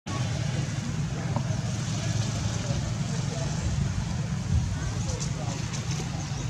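Steady low rumble with faint background voices.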